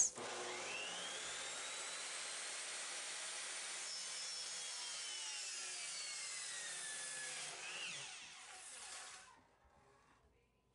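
Electric miter saw spinning up with a rising whine and running as it cuts through a wooden board, then winding down with a long falling whine and fading out about nine seconds in.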